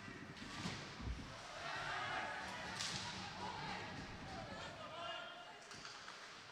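Ice hockey play in an indoor rink: sharp knocks of stick, puck and boards, the loudest about three seconds in, over a noisy rink hum, with voices calling out from players and spectators.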